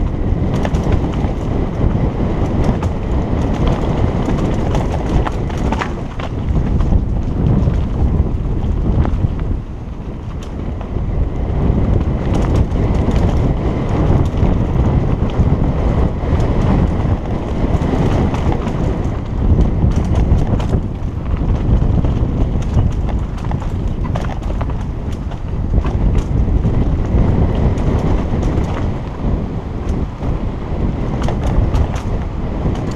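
Mountain bike ridden fast down a dirt forest trail: a steady rumble of wind on a helmet-mounted camera's microphone and tyres on dirt, with constant clattering from the bike's chain and frame over roots and bumps.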